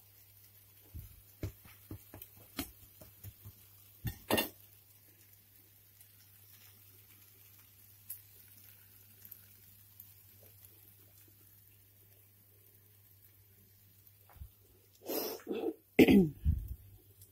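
Scattered light clicks and knocks of kitchen handling around the stove, the strongest about four seconds in, over a faint steady hum. A louder burst of noise comes near the end.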